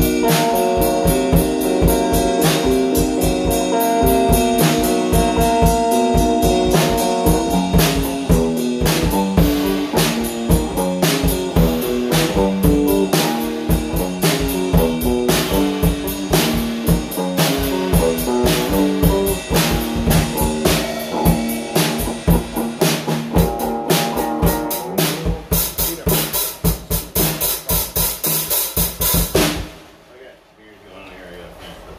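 Electric guitar and drum kit playing together: a guitar riff over dense, driving drum hits, with cymbals ringing over the last few seconds before both stop suddenly at the end.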